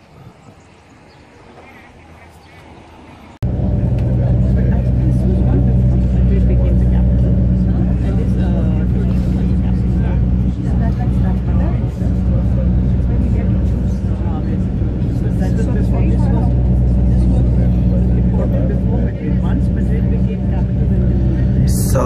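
Faint outdoor ambience, then about three seconds in an abrupt jump to the steady low drone of engine and road noise heard inside a moving vehicle at highway speed.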